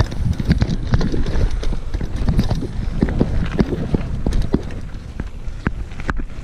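Mountain bike ridden over a rough dirt and gravel trail: tyres on the gravel and an irregular rattling and knocking from the bike over the bumps, over a steady low rumble.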